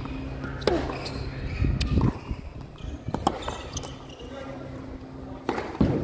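Tennis rally on a hard court: a series of sharp pops from the ball being struck by strings and bouncing on the court, spaced about a second or more apart, the last and loudest near the end.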